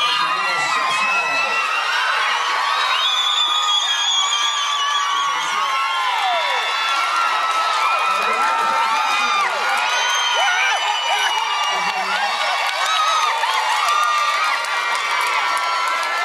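A cinema audience cheering and screaming, with many high-pitched voices shrieking and whooping at once in a sustained din.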